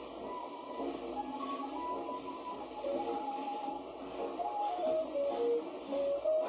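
Background music with a stepping melody and a steady beat.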